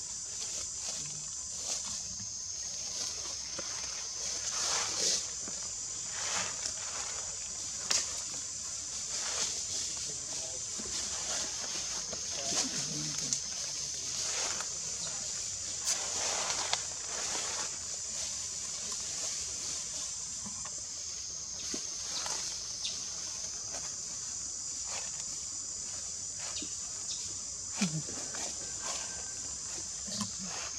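Steady high-pitched insect drone throughout, with scattered short sharp noises, a few louder ones about eight seconds in, around thirteen to seventeen seconds, and near the end.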